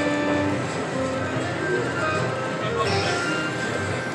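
Video slot machine playing its electronic bonus-round music and reel-spin tones as a free spin plays out. The sound is steady, with short held notes and no sudden hits.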